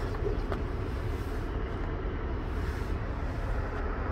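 Steady low rumble and hiss inside the cabin of a running 2019 Chevy Blazer at idle, with a faint click about half a second in.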